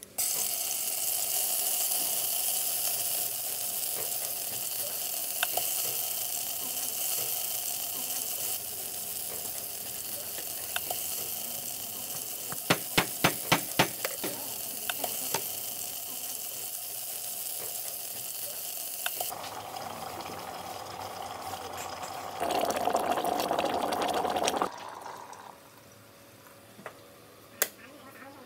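Hot oil sizzling steadily in a stainless electric kettle as spicy hot-pot base ingredients fry, with a quick run of about seven sharp knocks midway. Near the end, liquid is poured into the kettle, getting louder before it cuts off suddenly.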